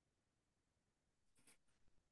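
Near silence: room tone, with only a very faint brief sound about one and a half seconds in.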